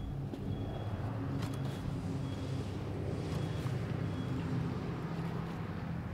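Steady low mechanical hum of an engine or motor running in the background, with a couple of faint clicks early on.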